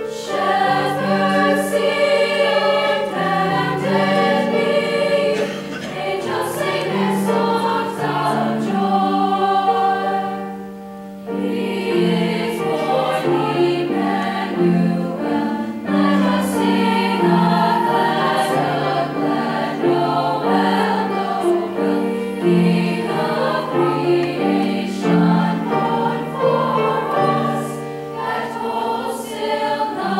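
High school women's choir singing in harmony with grand piano accompaniment, briefly dropping softer about ten seconds in.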